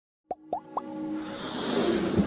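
Animated logo-intro sound effects: three quick pops, each sliding up in pitch, about a quarter-second apart, followed by a swelling electronic music build-up.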